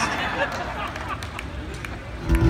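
Concert audience noise: a diffuse murmur of many voices that fades over the two seconds.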